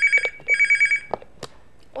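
Telephone ringing: two short rings, each a rapid trill between two high tones, heard over the studio line of a phone-in broadcast. A couple of faint clicks follow.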